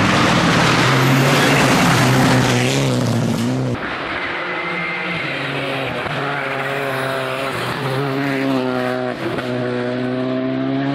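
Rally cars at speed on a loose-gravel stage: a Mitsubishi Lancer Evolution's engine running hard under heavy tyre and gravel noise, which cuts off abruptly about four seconds in. Then a Škoda Fabia rally car's engine is held at high revs through a corner, rising slightly with a brief lift near the end.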